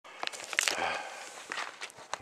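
Footsteps crunching on gravelly dirt ground, a few uneven steps.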